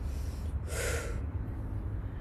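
A single audible breath, a sharp exhale through the nose or mouth, about half a second to a second in, as the body drops into a squat. It sits over a steady low background rumble.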